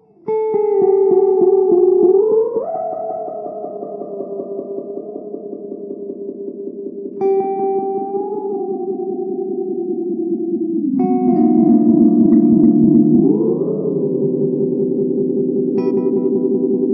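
Electric guitar played through a Moody Sounds Mushroom Echo pedal: three chords struck, at the start, about seven seconds in and about eleven seconds in, each ringing on through the echo. The pitch slides up twice, a couple of seconds after the first and third chords.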